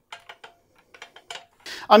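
A quick run of light, sharp clicks and clinks, about eight in just over a second, with a man's voice starting near the end.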